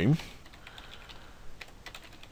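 Typing on a computer keyboard: a quick run of faint key clicks.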